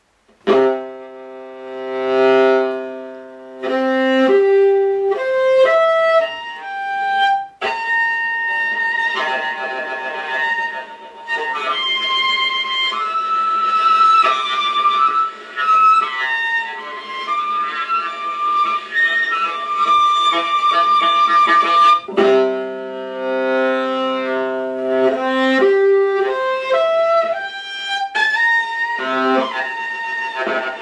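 Solo viola playing harmonics, the pure overtones made by touching the string very lightly while bowing. It starts about half a second in with sustained chords that step from note to note, climbs into a denser, higher passage, and brings back the opening chords near the end.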